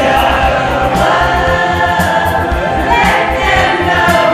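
A group of voices singing a Christmas pop song together as a choir, over backing music with a steady beat and jingle bells.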